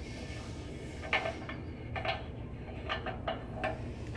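Hot-tap adapter being unscrewed by hand from a brass corporation stop and lifted off, giving a handful of light, short metallic clicks and clinks spread over a few seconds.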